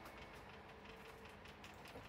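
Near silence: a faint, steady background hum.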